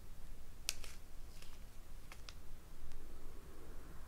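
A few light, sharp clicks and crinkles from a small clear plastic bag of square resin diamond-painting drills being handled, the drills shifting inside it. The sharpest click comes less than a second in, and two fainter ones follow over the next second and a half.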